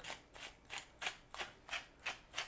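Handheld black pepper grinder being twisted over a pot, giving a series of short rasps about three or four a second.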